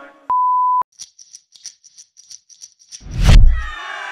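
Edited sound effects: a steady half-second 1 kHz beep tone like a censor bleep, then a rapid run of light, high ticks for about two seconds. About three seconds in comes a loud, deep boom as music starts.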